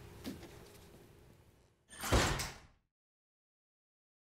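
A short rushing swoosh sound effect about two seconds in, loud for under a second and then fading, after a faint stretch of room noise. It comes as the outro logo card appears.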